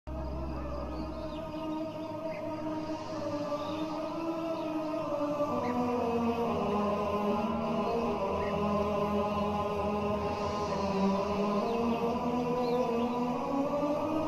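Intro music of wordless chanting voices holding long, slowly shifting notes, with a low drone under the first couple of seconds. It swells a little over the first several seconds.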